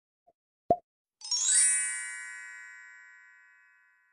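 Intro sound effects: a short pop, then about half a second later a bright shimmering chime that sweeps up briefly and rings out, fading slowly over a couple of seconds.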